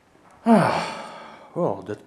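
A man's loud, breathy sigh of relief, falling in pitch and fading over about a second, followed by a short low murmur.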